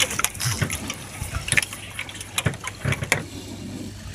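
Water lapping and sloshing against the side of a small outrigger fishing boat, with scattered small knocks and clicks from handling the line on board.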